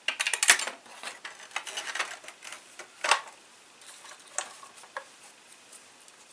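Clicks and knocks of an airsoft sniper rifle's receiver being fitted into its stock. A quick cluster of rattling clicks comes in the first second, followed by scattered single clicks, the sharpest about three seconds in.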